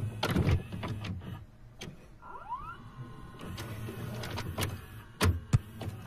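VHS video recorder taking in a cassette: the loading mechanism clunks and its motor whirs, with a rising whine about two seconds in and two sharp clicks near the end.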